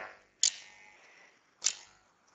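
Two short clicks a little over a second apart, close to the microphone, in a gap between spoken phrases.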